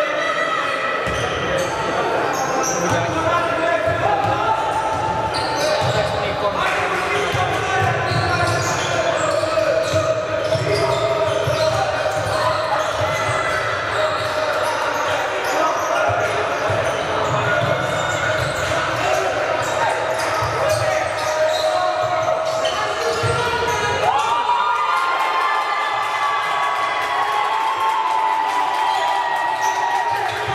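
Basketball game sound in a large echoing sports hall: the ball bouncing on the hardwood court again and again as players dribble, with players and coaches calling out over it.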